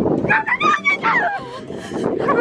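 A child's high-pitched squeal, wavering up and down in pitch for about a second.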